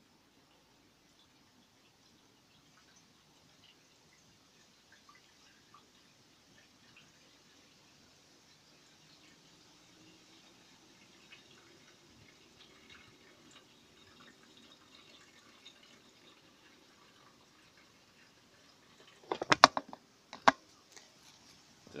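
Petrol pouring from a plastic bottle into a scooter's fuel tank filler neck, a faint trickle. Near the end comes a quick burst of loud clicks and knocks, then one more click.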